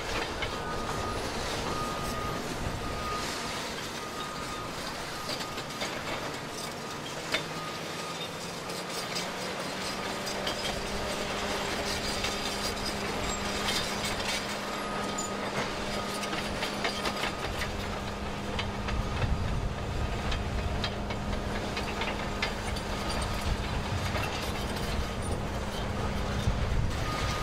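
Hydraulic excavator at work: a steady engine and hydraulic drone with frequent clanks and rattles. The low rumble grows heavier about two-thirds of the way through.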